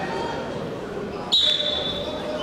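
Referee's whistle: one sudden, loud, steady high blast about a second and a third in, held to the end, signalling the restart of Greco-Roman wrestling from the par terre (ground) position. Behind it is the murmur of a crowd in a large hall.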